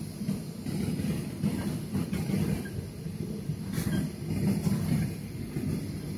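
Airliner cabin noise on the ground before takeoff: a low, uneven rumble of the jet engines and the landing gear rolling over the pavement.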